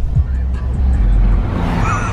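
Steady low rumble inside a car's cabin, heaviest in the middle, with music playing.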